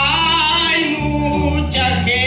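A man singing a gospel song, holding a note with vibrato for about a second and starting a new phrase near the end, over a band accompaniment with guitar and bass.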